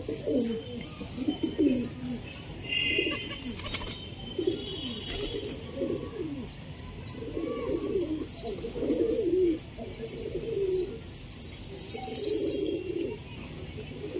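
Domestic pigeons cooing repeatedly, low rolling coos coming in groups every second or two.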